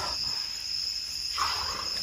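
Crickets keeping up a steady, high-pitched trill, with soft scrapes of bare hands in loose dirt at the start and again about one and a half seconds in.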